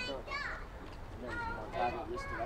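People talking, with some very high-pitched voices calling out among lower ones.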